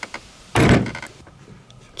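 Hand tools worked against a PEX cinch clamp and tubing: a short thunk about half a second in, with a few faint clicks before and after it.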